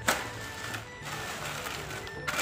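Packaged groceries being handled in a woven shopping bag: a sharp knock just after the start, then about a second of rustling packaging. Background music with a steady low bass line plays underneath.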